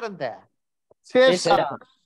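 A man speaking Kannada in two short phrases, with a pause of about half a second between them.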